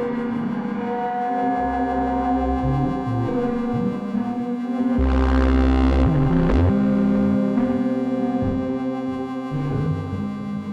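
Improvised electronic music on hardware synthesizers: held droning tones over bass notes that step from one pitch to another. About five seconds in, a louder bass note comes in with a hiss that swells and then fades.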